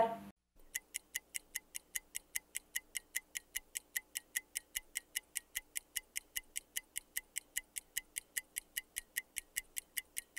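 Fast, very regular ticking of a clock-style timer, about five ticks a second, starting just under a second in and running steadily on, marking the time given for a written exercise.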